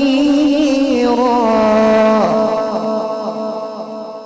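A man's melodic Quran recitation (tilawat) through a sound system: a long, wavering held note that ends about two seconds in, then fades away in a repeating echo.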